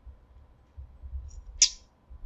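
Soft sipping of soda through a plastic straw, then a single short, high-pitched squeak from the straw and plastic cup lid about one and a half seconds in.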